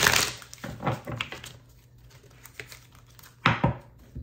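A deck of tarot cards being shuffled by hand. There is a burst of card noise at the start, a few softer rustles, a lull, then another sharp riffle about three and a half seconds in.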